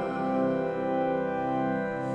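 Church organ holding sustained chords as it accompanies the hymn sung before the wedding vows.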